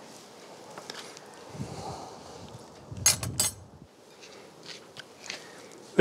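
Faint handling sounds as grilled boar chops are lifted off the grill: a low rumble about a second and a half in, then a quick cluster of sharp clicks around three seconds in.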